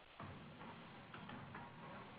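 Near silence on a phone conference line: faint line hiss with a few soft ticks.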